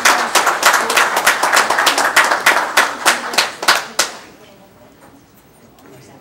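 Applause from a small group of people clapping by hand, dying away about four seconds in.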